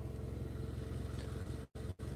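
Idling vehicle engine: a steady low hum that cuts out for an instant twice near the end.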